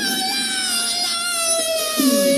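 A male rock vocalist holds one long, high sung note that sags slowly in pitch.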